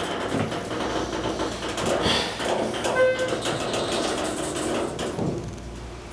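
Schindler 330A elevator cab noise: a steady rushing sound of the doors and machinery that falls away about five seconds in. A short electronic beep comes about three seconds in.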